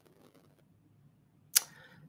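A near-silent room, then a single sharp click about one and a half seconds in: a lip smack as the mouth opens to speak.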